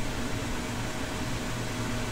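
Steady background hum and hiss, with a faint thin steady tone that fades out about a second and a half in.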